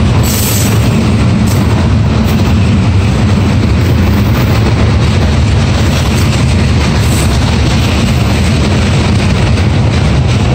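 Freight train boxcars rolling past close by: a loud, steady rumble of steel wheels on the rails.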